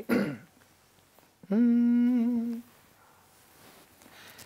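A man humming one steady held note for about a second, a singer finding his pitch just before he sings.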